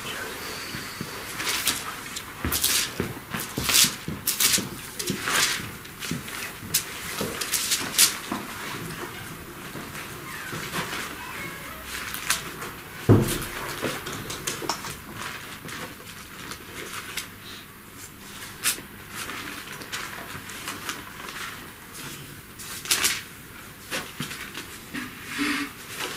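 Handling noises at a lectern while a Bible passage is looked up: scattered rustles and light clicks, with one louder thump about halfway through.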